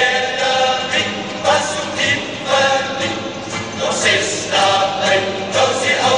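Cape Malay men's choir singing a comic song (moppie) in short, brisk phrases about twice a second.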